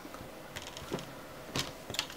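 Four faint, light clicks and taps as gloved hands set down and shift a 19-inch LCD panel's sheet-metal back and frame on cardboard.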